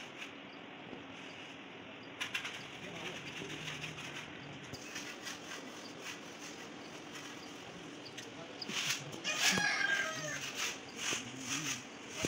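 Faint scraping, rustling and tapping from plaster arch panels being handled and pressed into place by hand, with a short burst of louder handling and an unidentified pitched call about nine seconds in.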